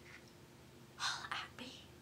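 A woman whispering briefly, a breathy word or two about a second in, over faint room hum.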